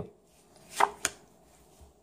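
A tarot card being flipped over and laid down on a cloth-covered table: a short swish and then a crisp click of the card, close together about a second in.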